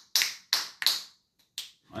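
Several people snapping their fingers out of step: about four sharp, unevenly spaced snaps.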